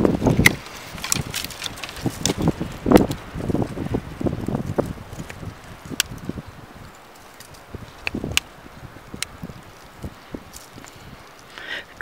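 Dead wood being cut out of an apricot tree with a pruning tool: bursts of branch and twig rustling in the first five seconds, then a few sharp single clicks with quieter pauses between.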